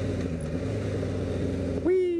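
1988 Honda CBR600F1 Hurricane's inline-four engine running at a steady cruise, with wind noise on the helmet-mounted microphone.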